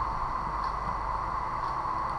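Steady background noise, a low hum and hiss with no distinct events: room tone picked up by the microphone.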